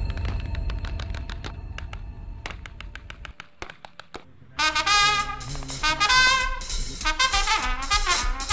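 Music: a drum-heavy piece fades away over the first four seconds with a run of quick, even clicks. About four and a half seconds in, a swing band's brass section starts abruptly and loudly.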